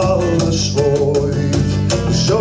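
Live acoustic band music: acoustic guitars strummed over a bass guitar, with a sung vocal line.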